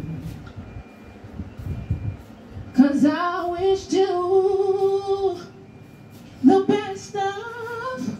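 A woman singing a cappella into a microphone, with no accompaniment. Two long phrases of held notes come in, the first about three seconds in and the second near the end.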